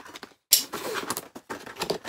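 Utility knife slicing through a cardboard box. A sudden loud rasp comes about half a second in, followed by rough, uneven scraping strokes.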